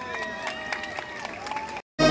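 Voices of a spectator crowd, several people calling out over a background murmur, with scattered sharp clicks. The sound cuts out completely for a moment just before the end.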